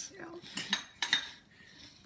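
Dishes clinking: a few sharp clinks, about half a second and a second in, as a plate is handled on the counter.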